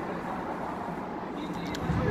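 Steady low rumble and hiss of an open-air football pitch, with faint calls from players and a few light clicks near the end.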